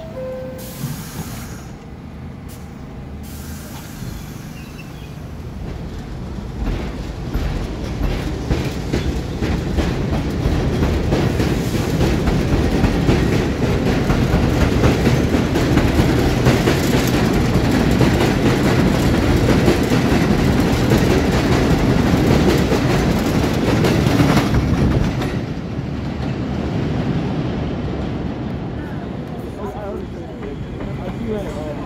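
A falling two-note door chime, then an R62A subway train pulling out of the station. Its running noise and wheel clatter build as it gathers speed past close by, then fade away in the last few seconds.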